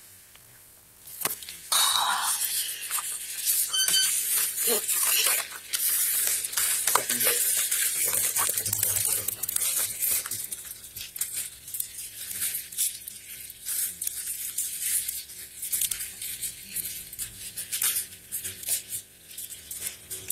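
Sheets of paper rustling and being handled, then a pen scratching as a form is filled out, close to a body-worn microphone. The scratchy rustling starts about two seconds in and carries on with small clicks and rubs.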